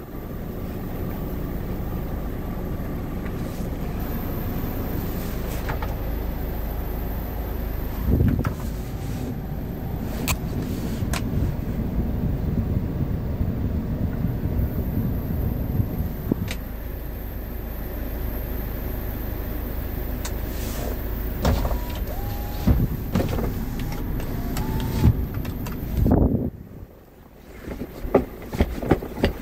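Kia Bongo truck's engine idling, heard inside the cab as a steady low rumble, with scattered clicks and knocks from the controls. The rumble drops away briefly near the end.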